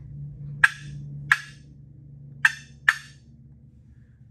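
Woodhaven cherry Real Hen box call played with light, short strokes of the lid, giving four sharp turkey clucks in two pairs.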